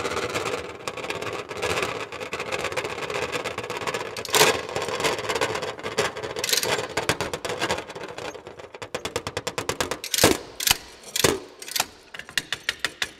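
A body-worn metal sound apparatus with rows of copper cylinders being played: a continuous mechanical rattle and clatter with sharp knocks, about four and six seconds in. Near the end come a fast even run of ticks and two loud knocks.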